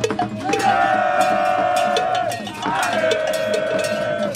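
Men's voices holding two long drawn-out notes, each about two seconds, over repeated sharp strikes of a metal bell.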